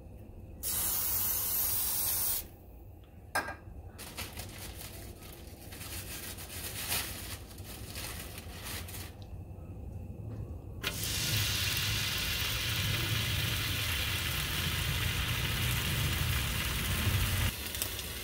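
A short spray of cooking oil hissing onto a nonstick griddle for about two seconds. From about eleven seconds in, a slice of ham sizzles steadily on the hot griddle.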